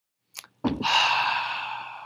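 A man's mouth click, then a long breathy sigh that starts strongly and fades away over about a second and a half.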